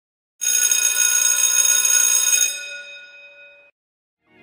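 Bell-like electronic ringing sound effect: a chord of many steady high pitches that starts just under half a second in, holds about two seconds, then fades away.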